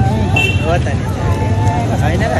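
Men talking, with a steady low rumble of street traffic behind them.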